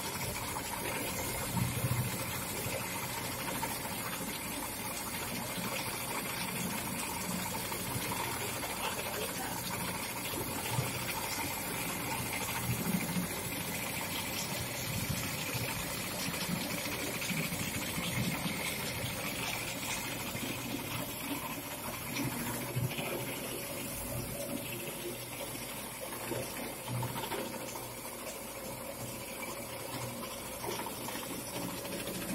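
Stone atta chakki (stone-plate flour mill) running steadily, grinding grain into flour.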